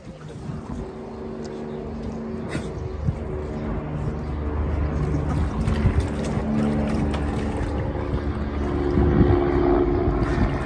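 A motor engine running steadily with a low hum that slowly grows louder, with water splashing as a dog paws in a plastic paddling pool.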